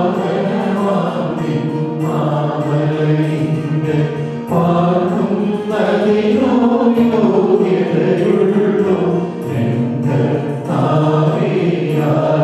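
Voices singing a Syro-Malabar liturgical chant in sustained, held notes, in phrases separated by short breaks.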